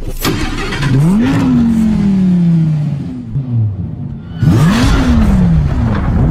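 A car engine started with a sudden burst and then revved: the pitch climbs quickly about a second in and falls away slowly, rises sharply again about four and a half seconds in, and gives a few short blips near the end.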